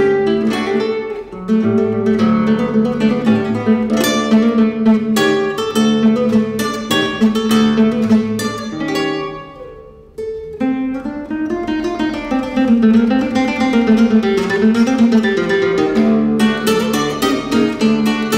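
Classical guitar played solo in a Spanish, flamenco-like style: quick plucked notes and strummed chords over a held bass note. About ten seconds in the music dies away, then comes back with a sharp chord into a lower melody that rises and falls, before the quick strummed figures return near the end.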